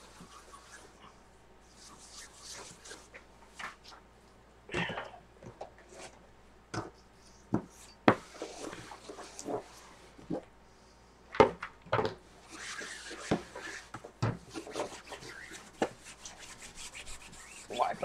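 Paper and craft materials being handled on a work table: short stretches of rubbing and rustling, with scattered light taps and clicks.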